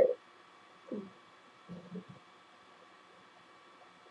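Mostly quiet room with a faint steady hum, broken by two or three brief, soft vocal murmurs about one and two seconds in.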